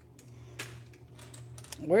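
Loose plastic LEGO pieces clicking faintly as a hand sorts through them, a few separate clicks over a low steady hum.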